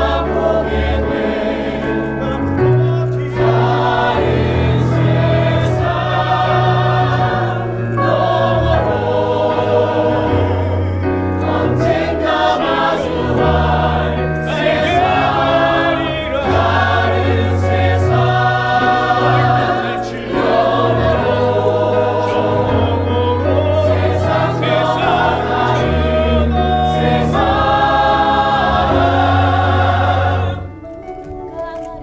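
A mixed company of men's and women's voices singing a musical-theatre ensemble number in chorus. Underneath is an instrumental accompaniment with a bass line of long held notes.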